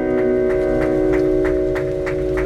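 Amplified live music: a chord held and ringing steadily as a song closes, with a soft tick about three times a second.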